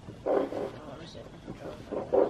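A person's voice: one short, loud vocal outburst without words about a quarter second in, then quieter voice sounds and another brief loud vocal sound right at the end.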